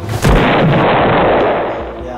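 A loud blast sound effect: a sudden bang about a quarter of a second in, followed by a rumbling noise that fades over about a second and a half.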